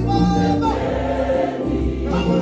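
Gospel choir singing in harmony, with a male lead singer on a microphone.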